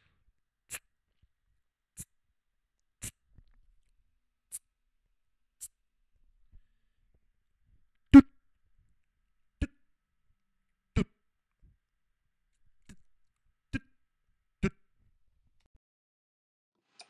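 Vocal beatbox drum sounds made with the mouth, one at a time with pauses between: about a dozen hits, the first several faint and hissy, the later ones louder and deeper, the loudest about eight seconds in.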